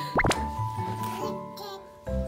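Light children's background music with sustained notes, and a quick rising pop sound effect about a quarter second in.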